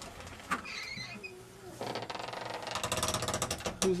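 A door creaking as it is opened: a rough, rasping creak made of rapid pulses that builds over about two seconds, after a soft click about half a second in.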